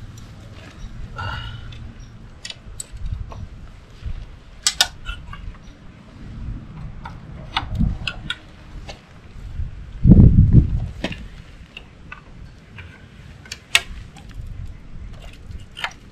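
Scattered clicks and taps of a paramotor's flexible propeller-guard rods being handled and slotted into the frame, over a low rumble. The loudest sound is a heavy low thump about ten seconds in.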